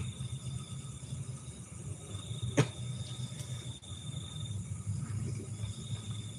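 A thin, high insect trill that comes and goes in long stretches, over a steady low rumble, with one sharp click about two and a half seconds in.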